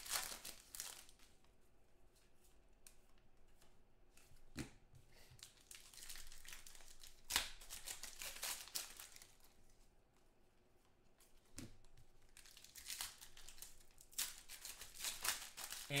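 Foil trading-card pack wrappers being torn open and crumpled by hand, coming in irregular bursts of crinkling and tearing with short quieter gaps between them.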